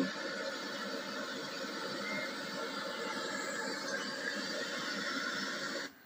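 Steady hiss-like noise from an old camcorder tape's soundtrack playing through a television speaker. It cuts off suddenly near the end.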